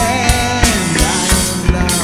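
Rock music with a drum kit and electric guitar, a held note bending in pitch over steady drum strokes.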